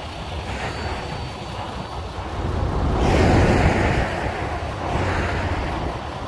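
A road vehicle passes by on the highway, its tyre and engine noise building, peaking about halfway through and fading again, with wind rumbling on the microphone.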